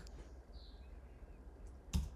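Low steady hum with a faint short sound about half a second in, then one sharp click near the end: a keystroke on the computer keyboard as a terminal command is entered.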